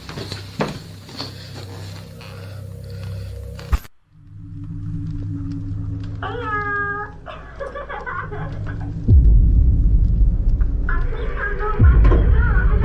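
Scuffs and clicks that cut off abruptly about four seconds in. Then a touch-activated toy ball on a wooden cupboard gives a short warbling electronic sound, followed from about nine seconds by a loud low rumble as the toy turns and rolls across the cupboard top.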